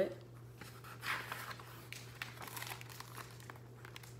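A page of a hardcover picture book being turned by hand: soft paper rustling with a few small clicks for a couple of seconds, starting about a second in.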